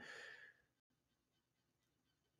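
Near silence, with only a faint fading sound in the first half second.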